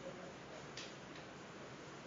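Quiet room tone in a pause between speech, with one faint brief hiss a little under a second in.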